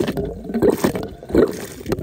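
Soapy laundry greywater gushing and gurgling out of an irrigation line outlet into a mulch basin, coming in irregular surges.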